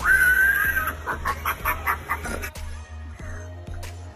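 Pig-butcher Halloween animatronic playing a pig squeal through its speaker: one held squeal, then a fast run of short squeals and grunts that stops about two and a half seconds in. Quieter background music follows.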